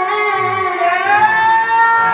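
A woman singing one long held note into a microphone with a slight waver, dipping and then sliding up in pitch about a second in and holding the higher note.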